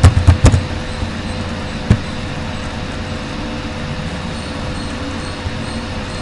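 A few computer-keyboard key clicks in the first half-second as a password is typed, then a single click about two seconds in. Underneath is a steady low background rumble with a faint constant tone.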